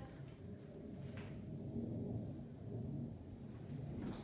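Faint, steady low rumble of jet aircraft passing overhead, heard from inside the house.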